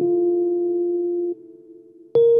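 Kawai MP11SE stage piano, played with an electric-piano voice, holding a sustained chord that is released abruptly about two-thirds of the way through, leaving a brief faint tail before the next chord.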